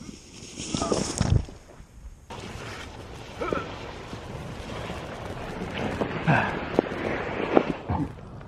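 Short wordless vocal sounds from people outdoors in the snow, over a steady rushing noise, with a thump about a second in.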